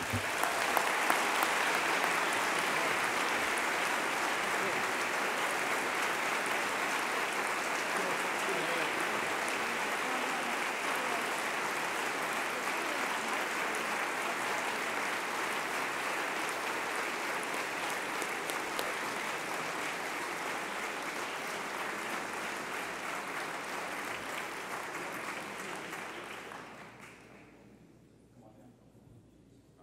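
Audience applauding in a long ovation that slowly thins and fades out near the end.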